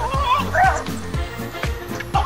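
Background music with a steady beat, over a small dog's short, high, wavering yelps in the first second.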